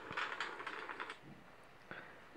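Faint crackling-fire sound effect played from a smartphone app: a scatter of small crackles that thins out and fades away about a second and a half in.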